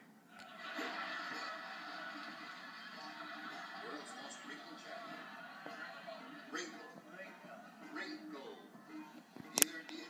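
Game-show audio played from a television and picked up in the room: steady background music with studio sound and brief snatches of voices, and one sharp click near the end.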